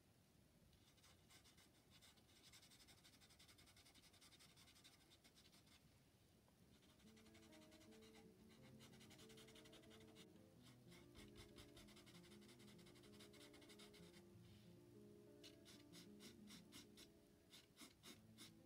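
Very faint scratching of a charcoal pencil on paper. Soft background music with held notes comes in about seven seconds in.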